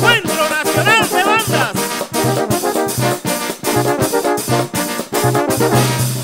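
Brass band music: trumpet and trombone lines over a quick, steady percussion beat and a pulsing bass, with sliding horn notes in the first couple of seconds.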